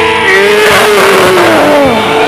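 Loud live gamelan accompaniment for a jaran kepang dance, with a long falling vocal glide sliding down in pitch over a steady held note.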